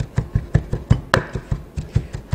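A chef's knife chopping raw beef into a fine mince on a wooden cutting board: quick, even knocks of the blade on the board, about five a second, with one sharper knock just past the middle.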